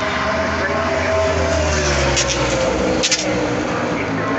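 NASCAR Cup Series stock car's V8 engine running at speed on the track, its pitch falling slowly as it goes by.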